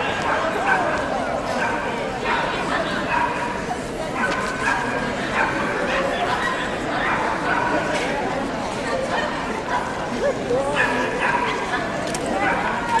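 A dog barking over and over in short barks, roughly once a second, over the steady chatter of a crowd in a large hall.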